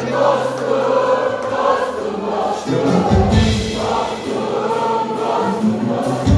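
Live band music with voices singing; a heavy bass and drum beat comes in strongly about three seconds in.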